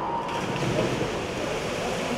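Racing swimmers splashing in an indoor pool just after diving in off the starting blocks: a steady wash of churning water.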